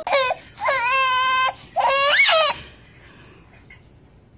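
A baby crying: three loud, high-pitched wails, the third rising and then falling in pitch, stopping about two and a half seconds in.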